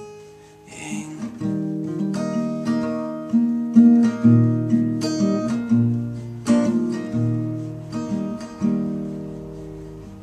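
Acoustic guitar playing an instrumental passage between sung verses: chords struck in a loose rhythm, each ringing and decaying, the last chord left to fade out near the end.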